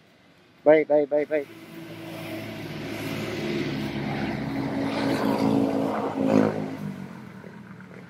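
A motor vehicle passing on the road: its engine sound swells over several seconds, peaks about six seconds in and fades away. Near the start come four short, loud pitched beeps in quick succession.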